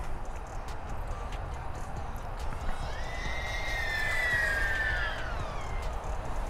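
Small FPV quadcopter (Diatone GT-R349) on its stock propellers flying a pass: a high motor-and-prop whine swells in about halfway through, then drops in pitch and fades just before the end as the drone goes by. A low wind rumble runs underneath.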